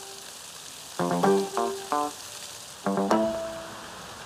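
Background music in two short runs of quick notes, about a second in and again about three seconds in, over a steady hiss of fountain water splashing onto stone paving.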